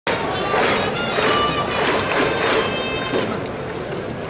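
Baseball stadium cheering section: trumpets playing a batter's cheer song with fans chanting along in time. The trumpets break off about three seconds in.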